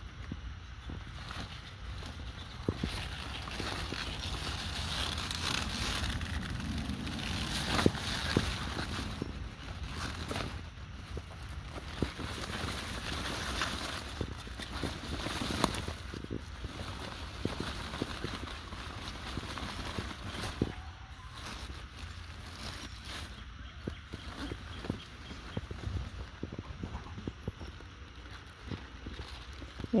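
Rustling and crackling of large kohlrabi leaves and dry leaf mulch as the plant is handled and pulled up, with scattered clicks and knocks from handling.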